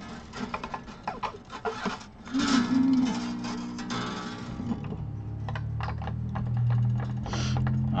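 Steel strings of an acoustic travel guitar being handled and plucked while it is brought up to tune. A run of small clicks comes first, then a plucked string rings from a bit past two seconds, and a lower string rings on through the last three seconds.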